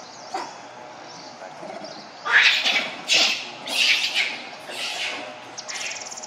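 A monkey screeching: four harsh calls in quick succession, starting about two seconds in. Near the end comes a brief, fast, high rattle.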